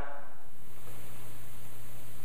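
Pause between words: a steady low hum with faint background hiss.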